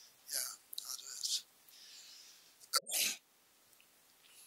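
A person sneezing once, sharply, about three seconds in, after a few short breathy hisses.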